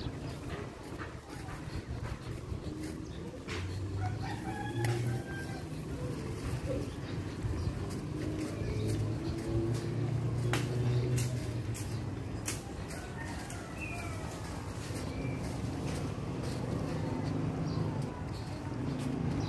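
Roosters crowing and birds chirping over a low rumble that swells around four and ten seconds in, with scattered sharp clicks.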